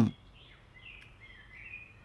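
Faint birdsong, a few wavering chirps and short warbles over quiet outdoor background noise.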